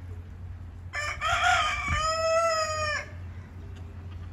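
Rooster crowing once, a single cock-a-doodle-doo of about two seconds starting about a second in, its last note held and then dropping away.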